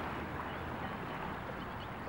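Small waves washing gently over the shore at the water's edge, a steady wash without breaks.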